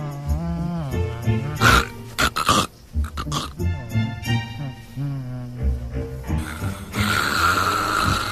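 Comedy film music playing over a sleeper's loud snoring, exaggerated into animal-like grunts and growls, with several sharp noisy bursts about two seconds in.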